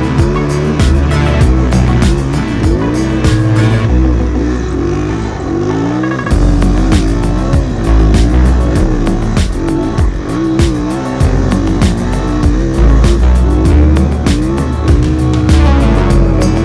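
Music with a steady beat over a 2007 Yamaha YZ450F snow bike's single-cylinder four-stroke engine, revving up and down again and again as it rides.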